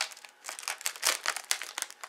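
Crinkly plastic wrapper of a resealable Oreo cookie package being handled and pulled at its stuck pull tab, in a run of irregular crackles and rustles.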